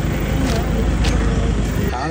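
Steady outdoor street noise with a low rumble, like passing traffic, with faint voices in it.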